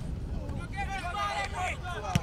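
Several voices calling and talking indistinctly, overlapping one another, with a steady low rumble underneath.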